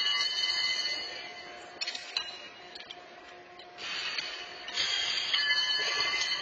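Steel horseshoes clanging against the stakes and each other, each hit ringing and then dying away. A ringing clang fades over the first second, sharp clinks come about two seconds in, and another ringing clang comes about five seconds in.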